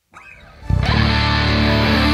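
Hard-rock band starting the song: a brief quiet lead-in, then about two-thirds of a second in, distorted electric guitars and the band come in loud and keep playing.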